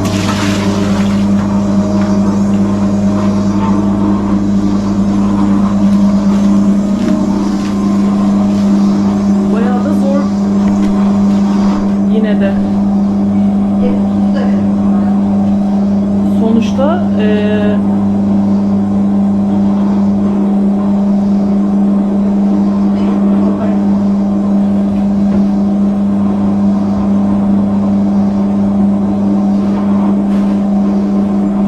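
Electric dough-kneading machine running with a loud, steady motor hum as its hook kneads sourdough bread dough in a large steel bowl. Water is poured from a bowl into the dough with a splash in the first second.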